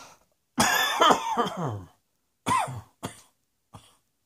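A person coughing: a run of several coughs starts about half a second in and lasts over a second. Two shorter coughs follow around two and a half and three seconds.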